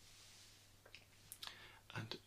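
Near silence with a few faint mouth clicks, lip and tongue sounds close to the microphone, coming in the second half.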